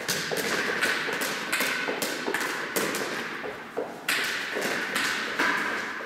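Irregular thumps and taps a few times a second, each with a short echo in a large hall: footfalls and a bouncing rubber ball from a helper moving around out of sight. The knocks grow louder from about two-thirds of the way in.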